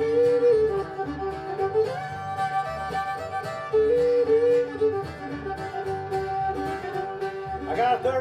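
Bluegrass band playing an instrumental intro: a fiddle carries the melody over strummed acoustic guitars and a pulsing upright bass.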